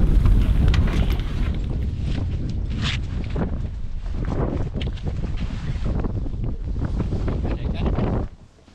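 Strong wind buffeting the microphone in a low, steady rumble over choppy open water.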